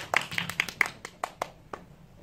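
Hand clapping from a small group: scattered claps that thin out and die away about one and a half seconds in.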